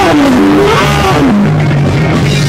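Saxophone playing a solo line over a live ska-punk band: a long falling bend at the start, a few short notes climbing back up, then another drop near the middle, with bass and drums underneath.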